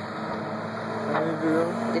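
Diesel engine of a tracked log loader running at a steady pitch while the machine swings its boom.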